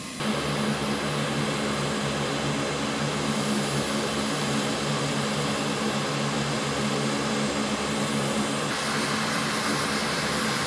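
Four turboprop engines of a Lockheed Martin C-130J Super Hercules running as it taxis: a loud, steady propeller drone with a low hum, which starts abruptly just after the beginning. The higher hiss grows stronger about a second before the end.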